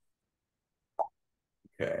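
Dead silence broken by a single short plop-like click about a second in, then the start of a man's voice near the end.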